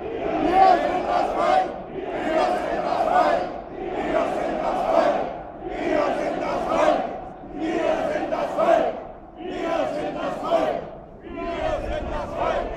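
A marching crowd chanting a short slogan in unison, repeated about every two seconds.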